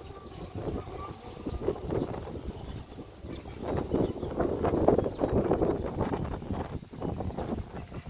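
Wind buffeting the microphone: an uneven low rumble that swells in a gust around the middle.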